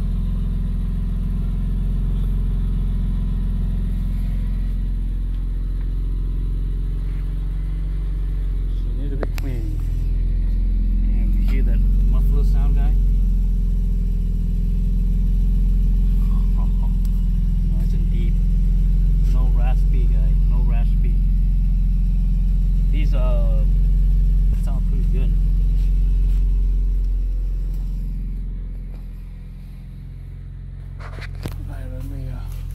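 BMW E46 M3's S54 inline-six idling steadily, heard near its quad exhaust tips, falling away near the end.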